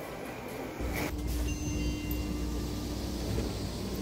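Train rumbling in a station, a low rumble that sets in about a second in, with a steady hum over it.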